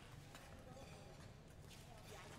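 Near silence in an ice rink: faint, distant voices with a couple of light knocks, about a third of a second in and again near the end.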